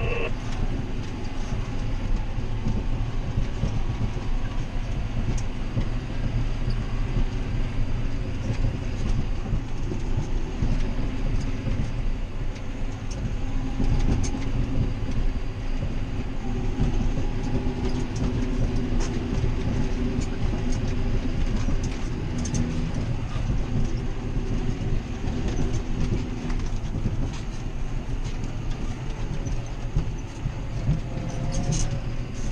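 John Deere 7530 tractor with AutoPowr transmission, its six-cylinder diesel heard from inside the cab while driving: a steady low drone with a clearer engine note through the middle stretch and scattered cab rattles and clicks.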